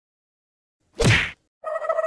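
Cartoon sound effects: a short whoosh about a second in, then, shortly before the end, a steady buzzing tone with a fast rattle starts.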